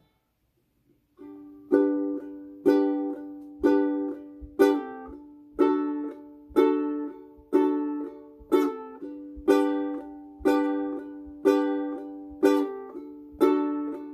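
Solo ukulele playing an instrumental intro: a soft chord about a second in, then one strummed chord roughly every second, each ringing out and fading before the next.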